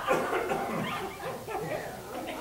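Several audience members talking and laughing over one another, away from the microphone.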